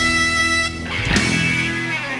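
Rock band playing live, electric guitars holding a loud chord that breaks off under a second in, followed by a sudden crash-like hit and ringing tones, as at a song's close.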